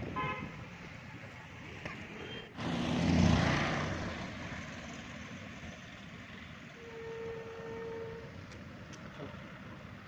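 Street traffic noise: a short vehicle horn toot at the start, then a vehicle passing about three seconds in. A steady held tone of about a second and a half comes near the seven-second mark.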